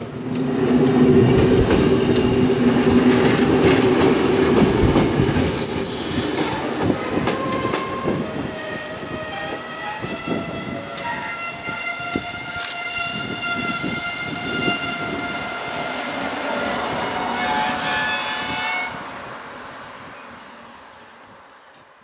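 Electric regional push-pull train sounding its horn for about five seconds, then rolling past with wheels squealing on the curved station tracks and rail joints clicking, fading out near the end.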